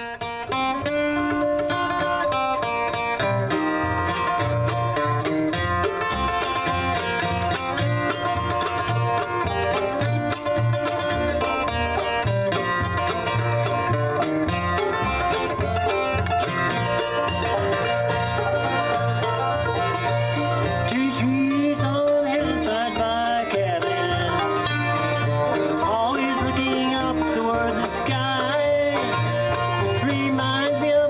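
Bluegrass band playing on banjo, fiddle, mandolin, acoustic guitar and upright bass.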